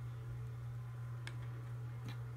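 A steady low hum with one faint click a little over a second in.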